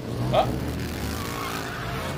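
A low, steady vehicle engine rumble from the film soundtrack, starting abruptly. A brief exclaimed "oh" comes over it.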